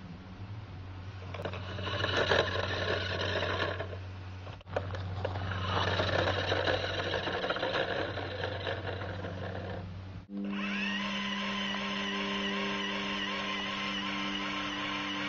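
Electric motor of a toy radio-controlled car whirring as the car drives off across gravel. After a cut, a steady, even-pitched motor whine as the car sits nose against a post on wooden decking with its wheels spinning in a burnout.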